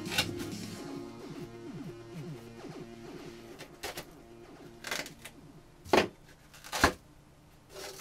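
Background music playing, with a few sharp clicks and snaps as a screwdriver pries the grille off a bookshelf speaker cabinet; the two loudest snaps come about six and seven seconds in.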